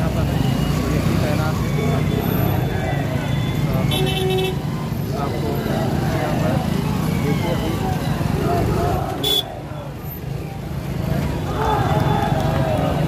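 Dense crowd of protesters, many voices talking and calling out at once in a continuous babble. A short vehicle horn toot comes about four seconds in.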